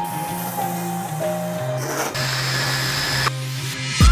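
Background music with held notes over the steady hiss of a pressure washer spraying water onto a truck's body. The spray stops suddenly about three seconds in.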